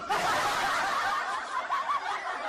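Several voices chuckling and snickering together, starting abruptly and carrying on at an even level.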